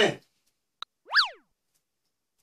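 Cartoon-style comedy sound effect: a short click, then, about a second in, a quick clean tone that swoops sharply up in pitch and glides back down.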